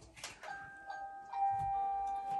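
Electronic chime melody from a Cuggl baby swing chair's built-in music unit, simple held beeping notes starting about half a second in after a couple of faint clicks.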